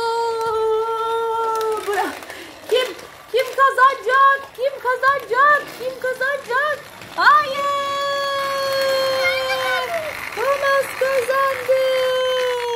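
A child's voice making train noises: a long held whistle-like 'oooo', then a run of short rising chugging calls about three a second, then long held tones again.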